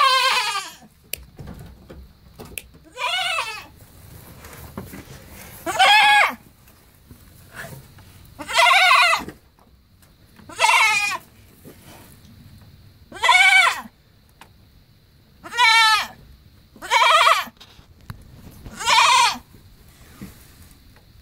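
Goat bleating loudly and over and over, about nine quavering calls spaced two to three seconds apart.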